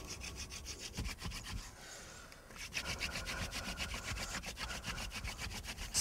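A wooden friction-fire drill: the spindle is worked rapidly back and forth against a fireboard, giving a fast, even wooden rubbing with a short pause about two seconds in. The friction is grinding out a pile of hot wood dust on the way to a smoking ember.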